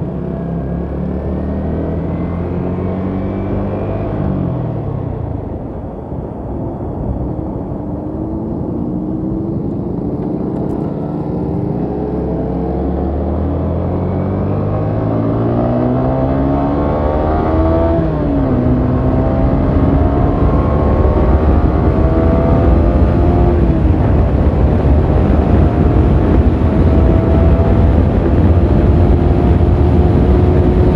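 Yamaha sport motorcycle's engine accelerating hard through the gears, its pitch climbing and then dropping at three upshifts, about 5, 18 and 24 seconds in. Wind noise rushing over the microphone grows louder as the speed rises.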